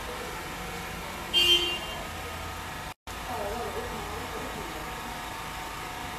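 Steady background noise with a short, loud, high-pitched toot about a second and a half in. Faint voices follow in the second half.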